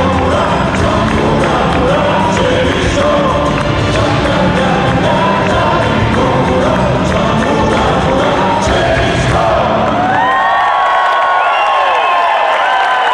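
Live rock band playing with singers, the song ending about ten seconds in, followed by the audience cheering and whooping.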